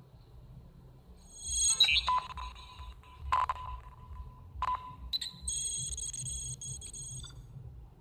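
Electronic intro sound effects playing back from a phone video-editing app: a rising whoosh about a second in, then a steady electronic tone struck by two sharp hits, and a high shimmering tone near the end.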